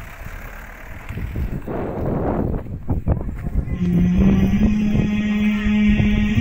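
A small car's engine running amid a noisy rumble of wind and handling. About four seconds in, background music starts with one long held note that shifts slightly in pitch.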